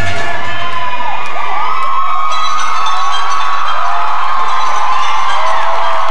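Audience cheering, whooping and shouting, with many high yells rising and falling in pitch, while the music drops out.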